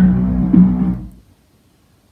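A short burst of music from a television's speakers, with held low plucked-string tones. It starts abruptly and stops a little over a second in.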